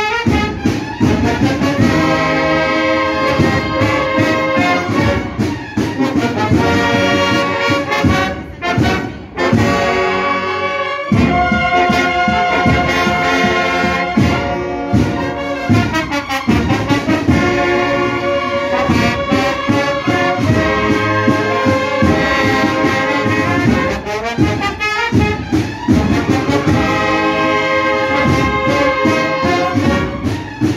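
A banda de cornetas y tambores playing a processional march at close range: massed cornets in several voices hold chords over a steady beat of drum strokes, with a brief dip in the sound about nine seconds in.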